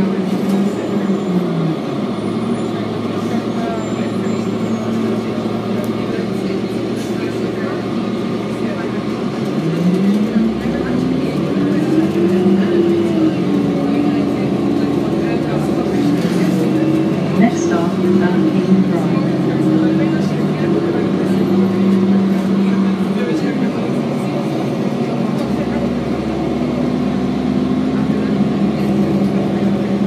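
Diesel engine of a 2007 Orion VII transit bus, heard from inside the cabin. Its pitch falls as the bus slows in the first couple of seconds, rises as it pulls away about ten seconds in, holds, and eases off again a little past twenty seconds.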